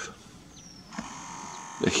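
Zoom motor of a Nikon P900 camera whining steadily for most of a second as the lens zooms out, starting about halfway through.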